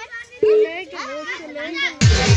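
Young girls' voices talking and calling out while the dance music drops out, with a short click about half a second in.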